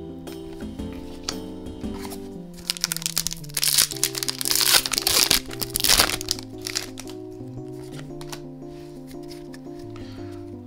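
Background music with a simple stepped melody. For a few seconds near the middle, loud crinkling and rustling of trading cards and foil booster packaging being handled.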